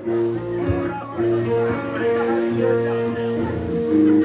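Live rock band playing a slow song intro: electric guitar holding long sustained notes over a steady bass line, with one soft thump about a second in.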